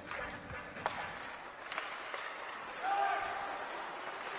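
Ice hockey rink sound during play: faint music over the arena speakers, with two sharp clacks of stick and puck about one and two seconds in and a brief shout about three seconds in.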